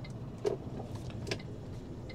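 Iveco lorry's diesel engine running at low speed, heard from inside the cab during a slow tight turn, with a few light clicks over the hum.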